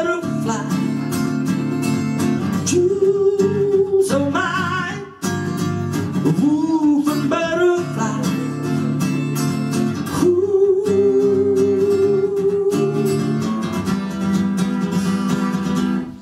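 Live acoustic song: a strummed acoustic guitar with a man singing over it, holding some long notes.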